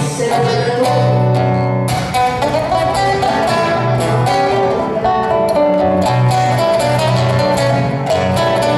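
Nylon-string classical guitar in the gaúcho style playing an instrumental passage, with plucked melody notes over sustained low bass notes.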